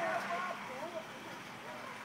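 Faint, distant voices calling out over the open yard, fading out about a second in, with only a weak background haze after.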